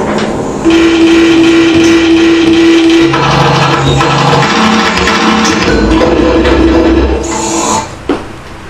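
Live noise music from amplified homemade spring instruments: a dense, loud wall of grinding noise with held drone tones. A steady mid-pitched tone sounds about a second in, then a lower one takes over near the middle, and the noise thins just at the end.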